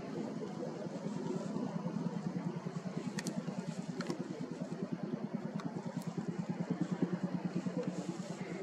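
A low engine drone with a fast, even pulse, steady throughout, with a few faint sharp clicks in the middle.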